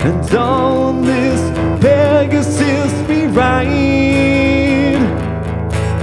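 Music: an acoustic-guitar song with a singer holding long, wavering notes between the lyric lines.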